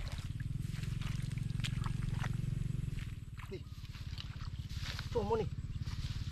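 A low, steady motor hum with a fine regular pulse, loudest in the first half. About five seconds in, a short wavering voice-like call.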